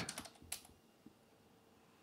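Computer keyboard keystrokes: a short run of key clicks in the first half-second, one more about half a second in, then a single faint click about a second in.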